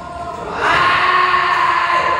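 A person's loud, drawn-out yell during a volleyball rally, starting about half a second in and held steadily for over a second.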